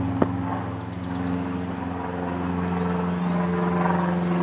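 A steady engine drone, a low hum with its overtones held at constant pitch, slowly growing louder; a single sharp click sounds just after the start.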